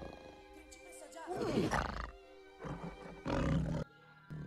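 A tiger growling three times over orchestral film music, the first growl the longest and the last cutting off abruptly just before the end.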